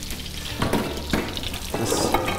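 Breaded turkey cutlets sizzling as they fry in a pan, a steady hiss, with three short knocks from the pan or utensils.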